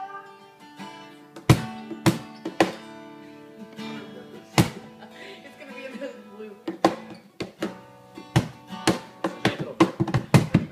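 Acoustic guitar chords strummed with hits on a cajon, spaced out at first and coming quicker near the end.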